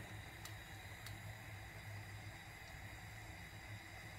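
Faint, steady hiss from a non-stick frying pan on a gas burner as a thin layer of batter cooks.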